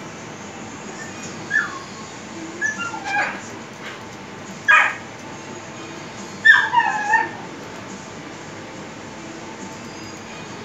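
A dog whimpering and yipping in short, high calls that fall in pitch: four bouts, the last and loudest coming about two-thirds of the way through, over a steady hiss.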